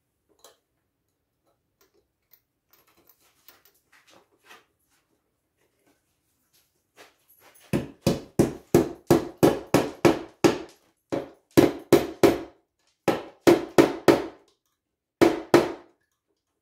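Small hammer tapping a metal keyhole escutcheon into place on a wooden drawer front, after a few faint clicks of handling. The hammer taps begin about halfway through and come about three a second, in four bursts of three to nine, each a short dull knock.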